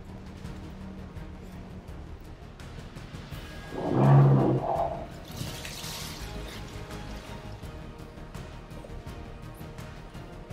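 Background music throughout, with a loud, sudden pitched sound about four seconds in that lasts about a second, followed by a brief hiss.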